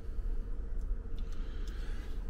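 Steady low rumble with a faint hum: the background drone of a cruise ship's cabin, with a few faint small clicks as champagne is sipped from a glass.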